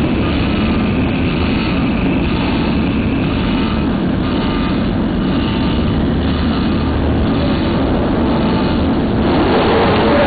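A steady, loud engine drone under a dense rushing noise, holding the same pitch throughout.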